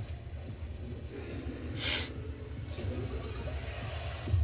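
Low, steady rumble from a horror film trailer's soundtrack, with one short hiss like a sharp breath about two seconds in.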